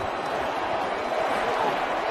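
Steady stadium crowd din, many voices blended together, heard through a football broadcast during a live play.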